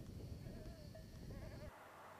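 Faint outdoor ambience with low wind rumble on the microphone and a distant animal bleating in a wavering call through the middle; both cut off shortly before the end, leaving a quieter steady hiss.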